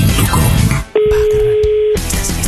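Show music with voices, then about a second in a steady single-pitched telephone tone comes on the line for about a second as a call is placed, cutting off sharply.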